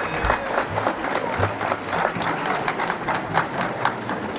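Audience applauding: many hands clapping in a dense, irregular patter that thins out near the end.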